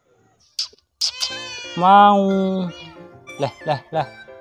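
A tabby cat meowing: a short call, then a long drawn-out meow about two seconds in, and a few quick short calls near the end.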